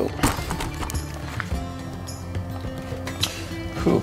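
Background music: held notes that change pitch twice, over light, scattered percussive clicks.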